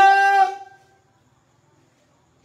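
A man's voice drawing out one long, steady intoned note in a preaching cry, fading out well under a second in.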